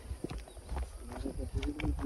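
Footsteps on a dry dirt and gravel trail going steeply downhill: a few faint scuffs and steps on loose footing, over a low rumble on the microphone.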